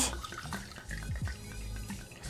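Cynar liqueur poured from its bottle into a metal jigger, a thin stream of liquid trickling into the small cup as two ounces are measured out. Background music plays underneath.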